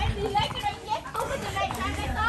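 Several people talking over one another in a group, with a couple of light clicks partway through.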